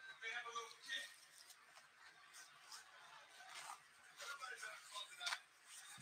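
Faint, indistinct speech with a few soft clicks and rustles of handling.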